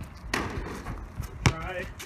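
Basketball hitting the hoop on a missed shot, a brief knock just after the start, then dropping and bouncing once on the concrete driveway with a sharp thud about a second and a half in.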